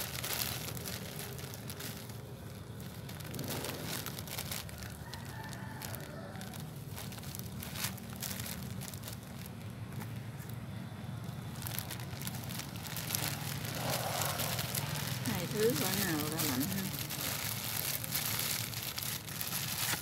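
Clear plastic bag crinkling and rustling as hands pack damp coconut coir around a desert rose cutting, with small irregular crackles throughout.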